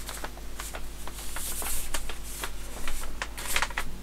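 A large rolled-up paper poster being handled and unrolled, giving irregular rustling and crackling.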